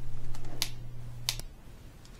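A few sharp clicks of a small screwdriver working at screws in a laptop's metal casing. A low steady hum underneath cuts out about three quarters of the way through.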